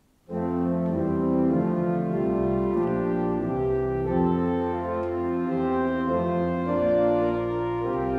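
Organ music begins abruptly about a third of a second in, playing slow held chords that shift every second or so.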